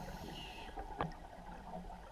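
Faint, muffled underwater noise with a low rumble, and one sharp click about a second in.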